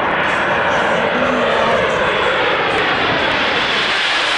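Four-engined jet airliner flying low overhead on landing approach: a loud, steady jet-engine roar, with its whine sliding down in pitch as it passes over.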